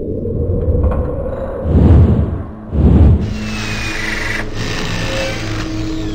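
Logo sting sound design: a low rumble with two heavy deep hits about a second apart, then a bright hissing swell with a steady low tone under it.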